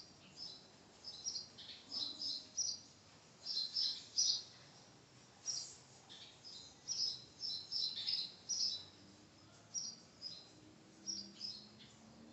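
Small birds chirping: many short, high chirps in irregular clusters, several a second, over a quiet background.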